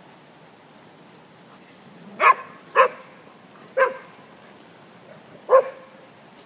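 A dog barking four times: short, sharp barks starting about two seconds in, the first two close together, then one more, and a last one after a longer gap.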